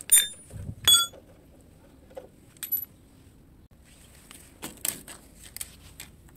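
Two sharp metal clinks with a ringing tone, about a second apart, as steel tools and bolts knock together during removal of the rear shock absorbers. A lighter clink follows, then a few soft knocks and scrapes.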